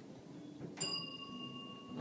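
Elevator arrival chime: a single bell-like ding about three-quarters of a second in, ringing and fading over about a second, signalling arrival at the ground floor.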